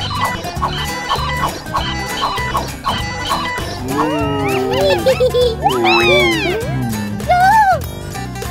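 Cartoon background music with a steady beat, with a short tone repeating about twice a second over it in the first half. From about halfway, cartoon character voices exclaim and squeal in wordless sounds that slide up and down in pitch.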